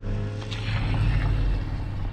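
Steady low vehicle hum with road and air noise, heard from inside a car with the side window down.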